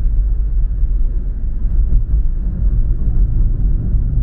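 Steady low road rumble of a moving car heard from inside its cabin.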